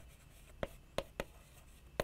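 Chalk writing on a chalkboard: three short, sharp taps as the letters are struck onto the board.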